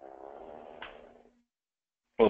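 A person's drawn-out low hum on the call line, steady for about a second and a half, then cutting off to dead silence.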